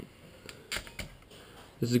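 Faint scattered clicks and crinkles of a taped display cable being peeled by hand off the back of a laptop LCD panel, a few short ones about two-thirds of the way through a second.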